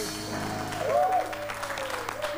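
Audience applauding and cheering as a live band's final held chord fades out over the first second or so.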